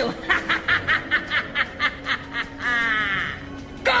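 A stage witch's exaggerated villain's laugh: a rapid run of short 'ha's, about five a second, ending in a drawn-out high note about three-quarters of the way through, over a steady drone in the background music.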